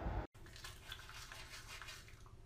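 Toothbrushes scrubbing teeth in quick, repeated scratchy strokes, several a second. Before them, a brief low rumble cuts off abruptly about a third of a second in.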